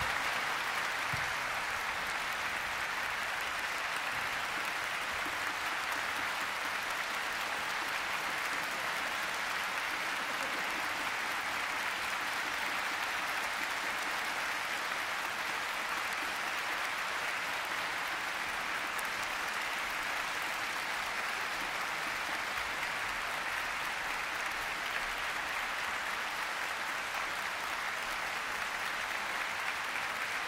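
Sustained audience applause, steady and unbroken, with many hands clapping at once.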